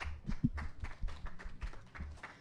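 Light, scattered hand clapping from a small audience: a run of short, sharp claps several times a second.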